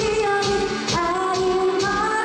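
Young female voice singing live into a handheld microphone over a K-pop dance backing track with a steady beat, holding and sliding between sustained notes.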